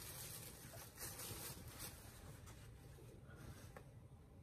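Faint rustling of a cloth pullover being lifted and unfolded by hand, with a few soft brushes in the first couple of seconds.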